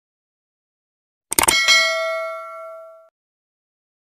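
Bell-notification sound effect: a short click about a second and a half in, then a bright bell ding that rings for about a second and a half and cuts off abruptly.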